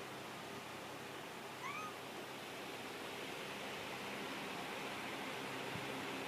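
A cat's single brief, faint rising meow about two seconds in, over steady room hiss.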